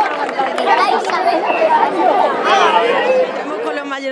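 Loud crowd of many people talking at once, a dense babble of overlapping voices.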